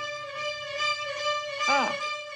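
Film score music: a violin holds one long, steady note, with a brief vocal exclamation near the end.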